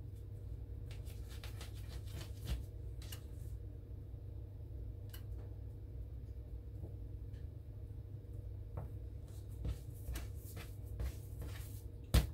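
Faint, scattered soft taps and rustles of hands rolling and pinching bread dough on a countertop, over a steady low hum.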